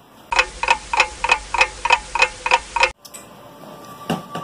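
Clock sound effect: about nine even, bell-like ticks, roughly three a second, starting and stopping abruptly.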